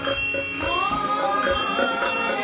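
Devotional bhajan music: a voice holding a long, slightly gliding note over small hand cymbals struck in a steady rhythm.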